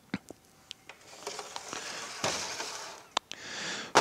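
Metal parts being handled on a steel workbench: several light clicks and knocks, the sharpest near the end, with rustling between them as a flywheel with its clutch disc is moved across the bench.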